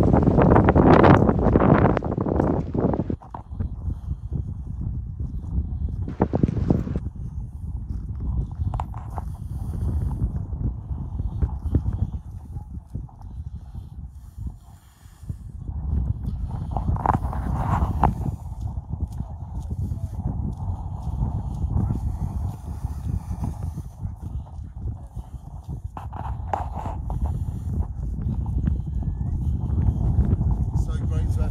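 Wind buffeting the microphone of a handheld camera, with footsteps and handling knocks as it is carried along a path. It is loudest in the first few seconds.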